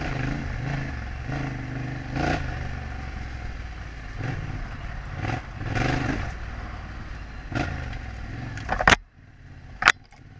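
Yamaha Ténéré 700's parallel-twin engine running at steady low revs on a rough dirt trail, with several short loud rattling bursts as the bike rides over bumps. The engine sound drops away sharply near the end.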